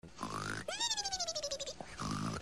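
Comic snoring: a low, rough snore on the in-breath, then a high whistle that slides down in pitch for about a second on the out-breath. The next snore starts near the end.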